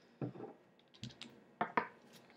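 Clicks and light knocks from handling vape hardware: a glass dropper bottle set down on a wooden table and a metal atomizer on a copper tube mod being worked by hand. A soft knock comes first, then a quick run of sharp clicks about a second in and two louder clicks near the end.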